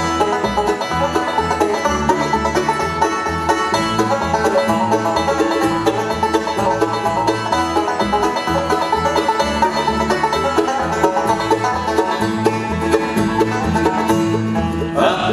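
Bluegrass band playing an instrumental break, with banjo picking to the fore over mandolin, acoustic guitar and an upright bass walking a steady beat.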